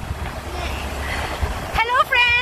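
Wind buffeting the phone's microphone: a steady low rumble with hiss, and a woman's voice breaking in near the end.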